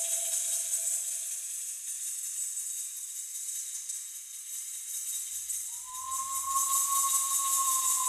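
A round handheld rattle on a stick shaken continuously, a dense steady rattling hiss. A soft, pure tone glides down and fades in the first two seconds, and another one rises in about six seconds in.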